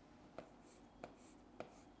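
Faint writing on a board: three light pen ticks about half a second apart, over near-silent room tone.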